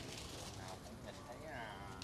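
Faint, distant voices of people talking, over low steady outdoor background noise.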